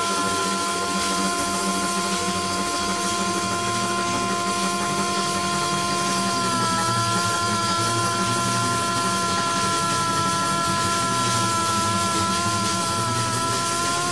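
Free jazz played by a reed, double bass and drums trio: one long, steady held note runs on over a dense, hissy wash of high sound and busy low playing.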